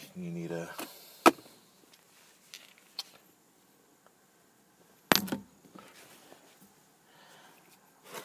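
A brief mumbled voice at the start, then a few sharp clicks and knocks from handling at the steering-wheel hub, the loudest about a second in and another about five seconds in.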